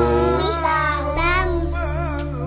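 A young child chanting Quran recitation in a sing-song voice, holding and wavering drawn-out vowels, over a steady low hum.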